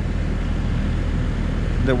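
Excavator engine running steadily at a constant speed, a low even hum heard from inside the cab.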